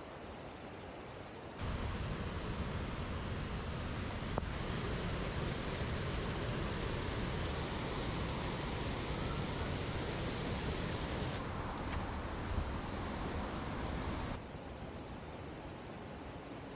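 Steady rushing of river rapids and a small waterfall. The noise jumps louder and deeper about a second and a half in, then drops back to a softer rush near the end.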